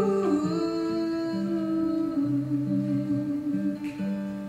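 Acoustic guitar playing slow picked notes under a woman humming one long low note, which she slides down into just after the start and holds to the end.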